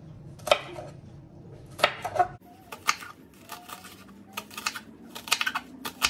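Kitchen knife chopping fresh okra into rounds on a wooden cutting board: irregular taps of the blade striking the board, coming faster near the end.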